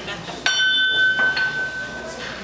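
A small bell struck once, ringing with a clear high tone that fades over about a second and a half; it is the signal opening the meeting.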